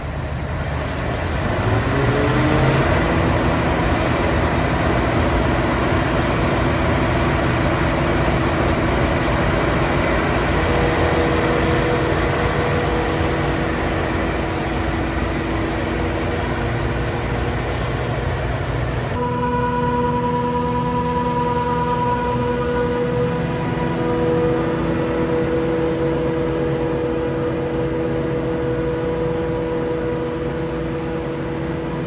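Claas Jaguar 880 self-propelled forage harvester running at working speed while chopping maize for silage: a loud, steady machine drone with several steady whines from the spinning chopper drum and blower. A whine rises in pitch over the first couple of seconds as the machine comes up to speed. About two-thirds through, the sound shifts abruptly to a cleaner, steadier whine.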